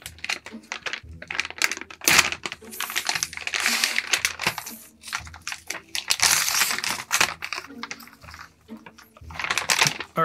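Metallised foil bag crinkling and tearing as it is ripped open by hand along its sealed edge: a dense run of sharp crackles and rustles that comes and goes, with quieter spells about halfway through and again near the end.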